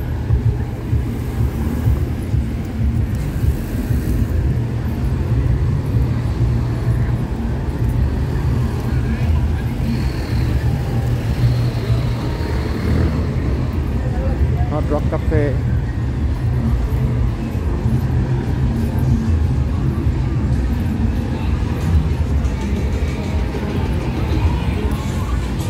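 Street traffic: cars and a minibus driving past, over a steady low rumble, with voices and music mixed in.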